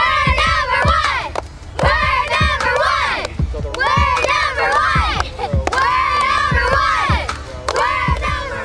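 A group of young girls chanting a team cheer together, shouted in four short phrases with brief pauses between them, and clapping along.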